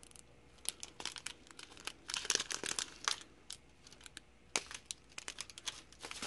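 Small plastic zip-lock bags of diamond-painting drills crinkling as they are handled: irregular sharp crackles, densest in a flurry about two to three seconds in.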